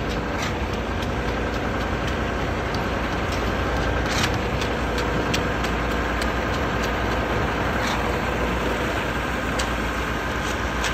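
Heavy diesel engine of a concrete pump truck running steadily during a slab pour, with many short, sharp clicks and knocks over it.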